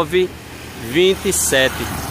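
A man speaking in short phrases over a steady low rumble of street traffic.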